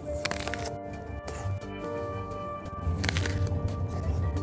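Two crunchy bites into a raw apple, one just after the start and one about three seconds in, over background music.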